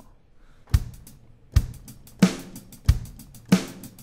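Sampled software drum kit (Logic Pro's SoCal kit) played from a MIDI keyboard at about 96 BPM: a simple beat of kick drum and snare hits with hi-hat ticks between them.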